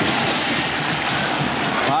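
Large stadium crowd noise, steady and loud, from tens of thousands of spectators as a football is kicked off.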